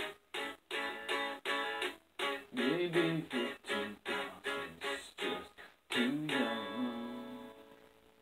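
Guitar strummed in a steady rhythm, about three strokes a second. A last chord about six seconds in is left ringing and fades away near the end.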